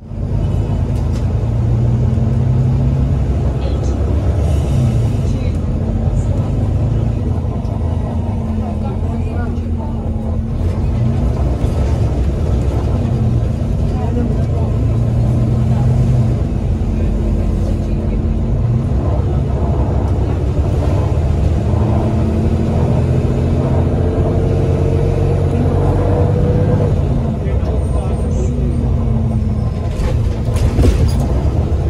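Volvo B9TL bus's 9-litre straight-six diesel engine and Voith automatic gearbox heard from inside the lower deck, its drone rising and falling in pitch in several surges as the bus accelerates and changes gear. A rising whine comes in near the end.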